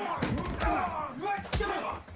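Film fight-scene punch impacts: several heavy thuds, the loudest about one and a half seconds in, among men's voices from the scene.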